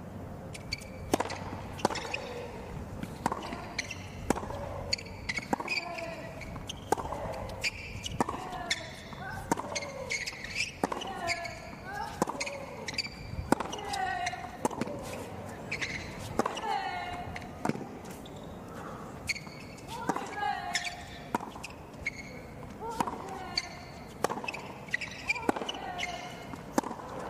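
A long tennis rally on a hard court: the ball cracks off the racket strings again and again, roughly once a second, with bounces in between. Many of the shots come with a short vocal grunt from the player hitting.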